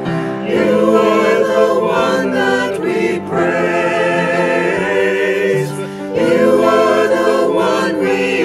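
Mixed choir of men and women, recorded separately and mixed as a virtual choir, singing a slow hymn line, 'You are the One that we praise, You are the One we adore', in phrases broken by short breaths about three and six seconds in.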